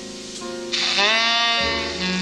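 Tenor saxophone playing a slow jazz ballad with a quartet. About two-thirds of a second in, a loud held note scoops upward into pitch, and an upright bass comes in with a low note near the end.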